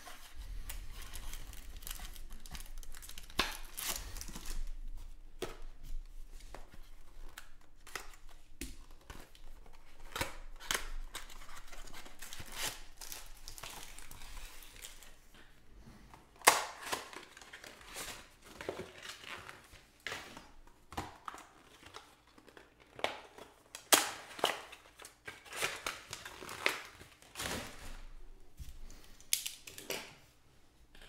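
Cardboard box of trading-card packs being torn open and its foil-wrapped packs handled: continuous paper tearing and crinkling, then from about halfway a run of separate, sharper crinkles and snaps.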